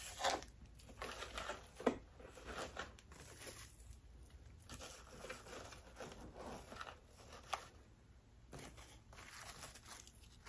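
Faint rustling and crinkling of paper shred filler being tucked by hand into a gift basket, with a few sharper crackles along the way.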